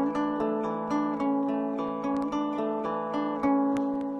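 Acoustic guitar fingerpicked, single notes plucked and left to ring over one another, with a new note about every half second to second. It is an A chord with a suspended fourth that resolves down to the third.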